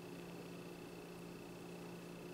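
Faint room tone: a steady low hum with a few held tones over a light hiss, with no other sound.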